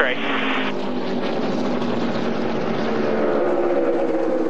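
Engines of a pack of NASCAR stock cars running at speed, a steady drone of several overlapping pitches that sag slightly near the end as the field comes off the throttle during a multi-car wreck.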